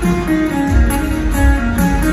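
Live rock band playing a slow ballad, loud through the stadium PA: a picked guitar melody of held notes over bass, with low thumps underneath and no singing.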